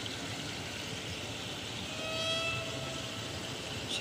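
Steady outdoor ambience of a city park: an even wash of background noise, with a faint held tone for about a second and a half past the middle.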